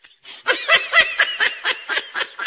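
A person laughing: a rapid string of short, high-pitched snickering laughs. It starts about half a second in, after a brief silence.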